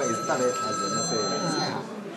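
A steady electronic ringing tone, made of several high pitches held at once, sounds under men's talk and cuts off shortly before the end.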